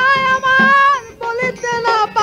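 Bengali bicched folk music: a high melodic line held in long, slightly wavering notes, breaking off briefly about a second in, over soft low drum strokes.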